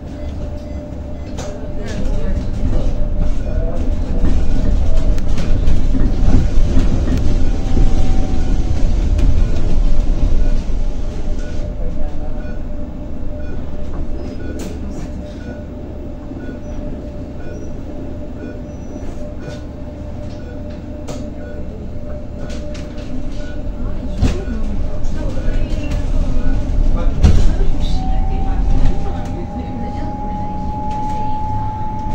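Cabin noise inside a battery-electric Zhongtong N12 city bus on the move: a low rumble of tyres on cobblestones with body rattles and clicks, loudest in the first third, over a steady whine from the electric drive. Near the end a whine rises in pitch.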